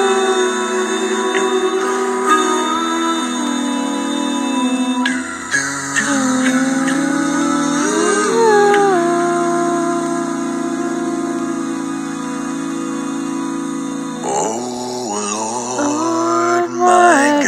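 An a cappella group's backing vocals holding sustained harmonised chords, with voices sliding between notes about halfway through: the instrumental-free intro of a karaoke track before the lead vocal comes in.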